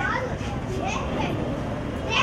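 Background chatter of several people, children's voices among them, over a steady low rumble.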